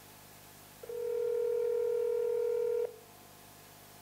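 North American telephone ringback tone heard through a smartphone's speakerphone: one steady two-second ring about a second in, the sign that the dialed line is ringing at the other end.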